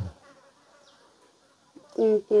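A flying insect buzzing faintly, its hum wavering.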